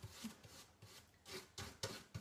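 Nearly dry paintbrush scrubbing paint onto bare sanded pine in a series of short, faint strokes.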